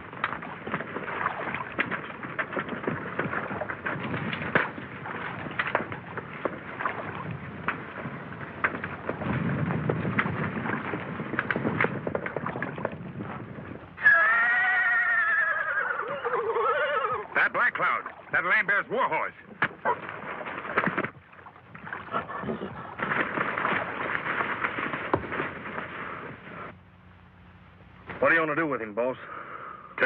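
A horse neighing loudly about halfway through, its call sweeping down in pitch, with more calls after it. Before that comes a stretch of scuffling noise with scattered knocks as the horse is hauled on a rope.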